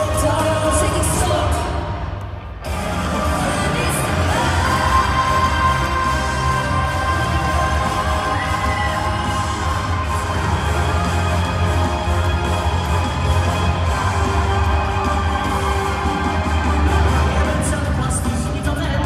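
Live pop music with singing, heard from the audience in an arena. About two seconds in the sound briefly dips and loses its high end, then the music carries on steadily.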